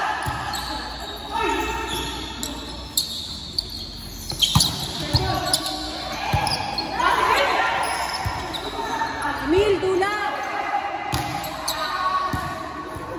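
Volleyball rally on a hard indoor court: several sharp smacks of hands striking the ball, echoing in a large hall, between players' shouted calls.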